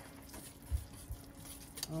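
Wire whisk stirring thick pumpkin filling in a stainless steel saucepan, faint, with two low thuds about a second in.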